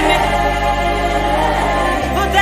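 Gospel worship music: a choir of women singing over steady low bass notes, the chord changing just after the start.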